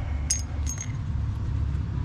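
Two light metal clinks, about a third of a second and three-quarters of a second in, as a broken motorcycle foot peg and its bolt are handled together, over a steady low rumble.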